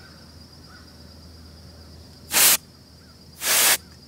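Two short hissing spray bursts, about a second apart with the second slightly longer, from a can of compressed-air duster held upside down so that it sprays freezing liquid propellant.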